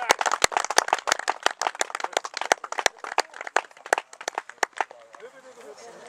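A small crowd of spectators clapping, scattered separate claps that thin out and stop about five seconds in, leaving faint distant voices.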